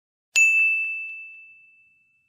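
A single bright ding from a bell-like chime sound effect. It strikes about a third of a second in and rings out on one high tone, fading away over about a second and a half.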